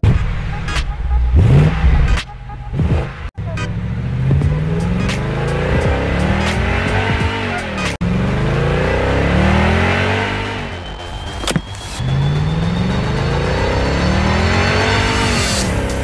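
Race-car engine sound effect revving up and falling back over and over, about once every two seconds. The children's ride-on cars are quiet electric toys, so this is an added or built-in recording, not a real engine.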